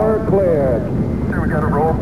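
Steady low rumble of rocket engines at liftoff, with a mission-control radio voice over it, thin and narrow-band like a radio link, in two short phrases.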